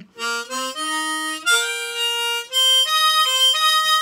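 A Hohner Marine Band Deluxe ten-hole diatonic harmonica played as a tuning check. A quick run of single notes steps upward, then longer held notes and octaves follow. By ear the tuning is very good, with the octaves a tiny bit out.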